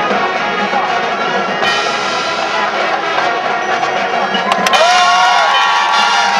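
Marching band playing its field show: brass with mallet percussion. About four and a half seconds in there is a sharp hit, and the band gets louder.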